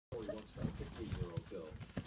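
A person talking steadily, apparently a radio or television discussion playing in the background, with the words not clearly made out.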